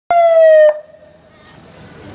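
Short siren blast from a Cruz Roja Mexicana ambulance: one loud tone that slides slightly down in pitch for about half a second and cuts off abruptly, leaving faint street noise.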